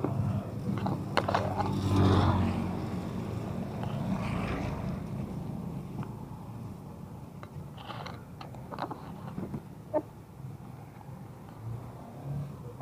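Motorcycle engine running, loudest in the first couple of seconds and then quieter, with scattered clicks and knocks and one sharp click about ten seconds in.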